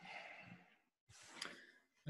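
Near silence with two faint breaths from a person about to speak, one at the start and one after about a second.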